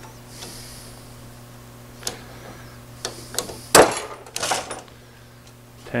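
Ratchet strap being released from tension: a few sharp metallic clicks from the ratchet buckle, the loudest a snap just under four seconds in as the strap lets go.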